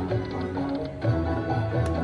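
Slot machine bonus-round music from a 5 Dragons Yellow machine's speakers: sustained electronic notes over a steady bass line, with a short click near the end.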